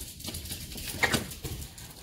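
Sliding glass patio door being slid open, its rollers rumbling along the track, with a short sharper sound about a second in.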